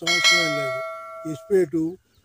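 Bell-chime sound effect of a subscribe-button notification animation: it rings out at once and fades away over about a second and a half.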